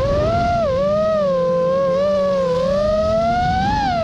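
Five-inch FPV freestyle quadcopter's Xing2 2207 1855 kv motors and Gemfan 51477 props whining in flight, the pitch rising and falling with throttle. The whine dips just under a second in, holds fairly steady, then climbs toward the end and drops back, over a low rumble of wind and prop wash.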